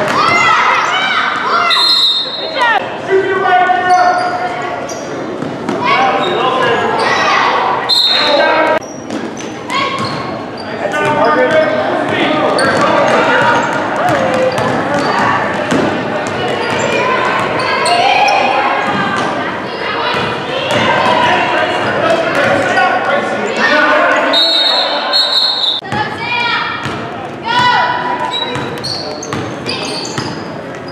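A basketball dribbling on a hardwood gym floor under the voices of players and spectators calling out, all echoing in a large gymnasium. Short, high referee whistle blasts sound about two seconds in and about eight seconds in, and a longer one near the end.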